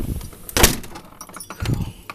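A house door knocking and clattering as it is handled coming in out of the wind: one loud sharp knock about half a second in and a second near the end, while wind rumble on the microphone fades away.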